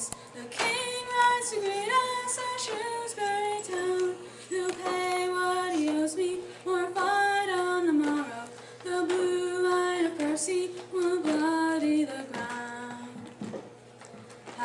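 A woman singing a ballad solo and unaccompanied, in long held notes that step up and down, with short breaths between phrases.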